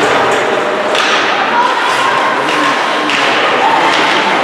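Ice hockey game sounds: skates on ice, with sticks and puck clacking and thuds, and players' voices calling out.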